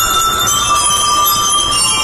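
Drum and lyre band playing, led by the bright metallic ring of the bell lyres holding sustained notes of a melody.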